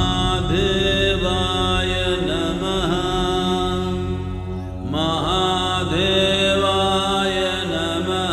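Devotional music: a mantra chanted in gliding phrases over a steady low drone, with a new phrase starting about five seconds in.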